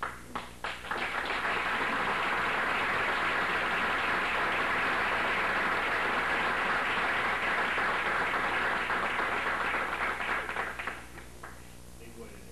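Audience applause: a few scattered claps build within the first second into steady clapping that holds for about ten seconds, then thins out to a few last claps near the end.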